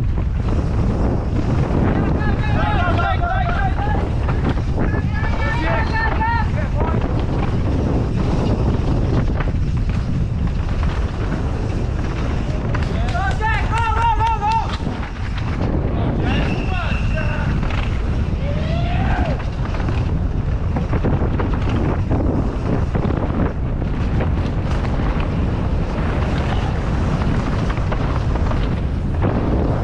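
Wind rushing over a chest-mounted action camera's microphone as a mountain bike descends a dirt trail at race speed, with the bike rattling over the ground. Spectators shout and cheer in short bursts as the rider passes, about two, five, thirteen and sixteen seconds in.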